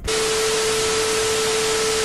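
TV static sound effect: a loud, even hiss of white noise with a steady mid-pitched tone held underneath. It starts abruptly and cuts off after about two seconds.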